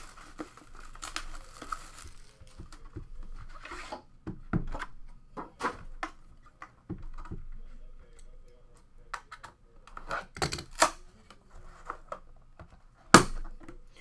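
Plastic wrap being torn off a trading card box and crinkled, followed by cardboard box handling with scattered clicks and taps. One sharp knock about a second before the end is the loudest sound.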